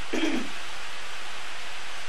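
A woman's single short cough near the start, over a steady hiss of heavy rain falling on the shed roof.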